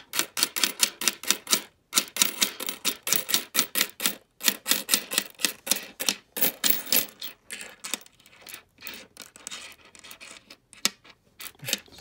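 Nickels clicking against one another and the tabletop as they are slid off a row of coins one by one: a quick run of sharp clinks, several a second, with brief pauses about two and four seconds in.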